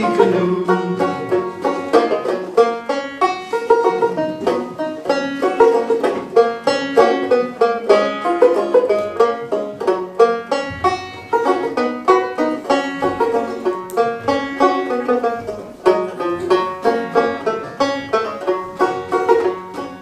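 Banjo played solo, a steady rhythmic run of plucked and strummed notes with no singing, as an instrumental break in a folk song.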